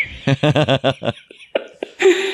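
A burst of laughter, a quick rhythmic 'ha-ha-ha' that dies away after about a second, followed by a few faint clicks.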